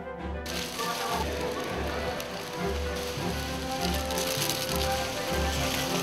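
Plastic snack wrappers of Umaibo sticks rustling and crinkling densely as they are handled and laid out, beginning about half a second in, under background music with a steady pulsing bass beat.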